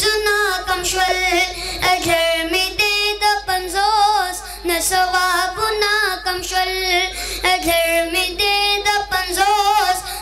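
A boy singing a Pashto naat solo into a microphone: long melodic phrases with a wavering, ornamented pitch, broken by short breaths.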